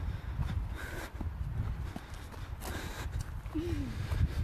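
Footsteps on a grassy dirt track, a few scattered soft steps over a steady low rumble of wind on the phone's microphone.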